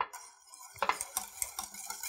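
Wire whisk stirring thick polenta in a stainless steel pot, its wires ticking and scraping against the pot's sides, working in freshly added butter and half-and-half. The ticks come quickly and unevenly from about a second in.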